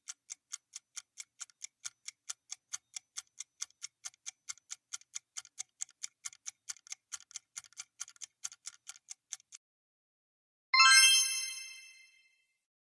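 Countdown timer sound effect ticking, about four ticks a second, stopping after about nine and a half seconds. About a second later a bright chime rings and fades, marking time up and the answer reveal.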